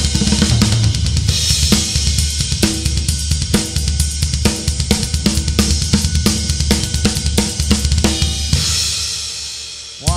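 Drum kit with Paiste cymbals playing a triplet shuffle groove: swung triplets on the ride cymbal, snare on two and four, and a steady run of straight triplets on two bass drum pedals. The playing fades out over the last second or so.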